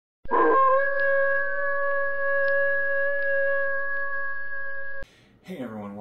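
One long held tone that rises briefly at the start, then holds a steady pitch for about five seconds before cutting off suddenly.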